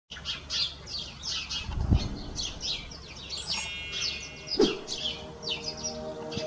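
Bird chirping: a quick series of short, high, downward-sliding chirps, several a second. A short ringing tone sounds about three and a half seconds in, and two low thumps come near two seconds and near the end.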